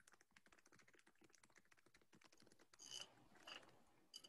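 Faint typing on a computer keyboard: a quick, uneven run of key clicks, with a couple of louder clicks and scuffs near the end.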